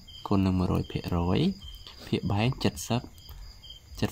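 A man speaking in short phrases, with crickets chirping faintly in the background between his words.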